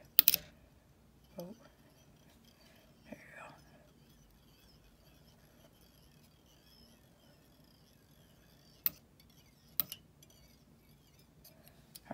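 Quiet fly-tying handling: a sharp click just after the start and two more about nine and ten seconds in, with a short exclamation early on.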